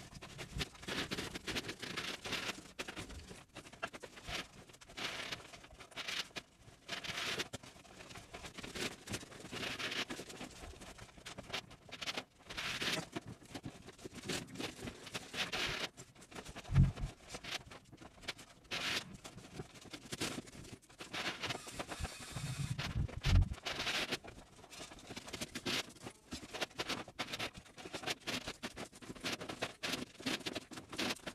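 Quick, dense patter of scraping, rustling and tapping from laying plastic underfloor heating pipe and pinning it to foil-faced insulation boards, with two heavy thumps about 17 and 23 seconds in.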